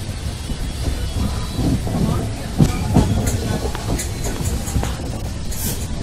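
Passenger train rumbling as it rolls through a station, heard from on board, with two sharp knocks about two and a half and three seconds in.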